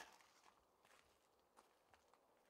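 Near silence, with a few faint short clicks and ticks, the first right at the start and the strongest.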